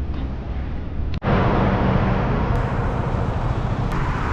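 City street ambience: a steady wash of passing traffic with a low rumble. It breaks off for a moment about a second in, after which the street noise is louder.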